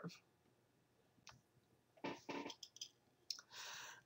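Near silence, broken by a faint murmur about two seconds in and a few small clicks, then a soft inhaled breath near the end.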